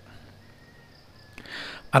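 A quiet pause in a man's spoken lecture: low background noise with a faint steady tone, then a short soft hiss about a second and a half in. His voice comes back right at the end.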